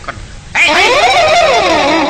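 A person's loud, drawn-out wailing cry starts about half a second in. Its pitch wavers, climbs, then slides down.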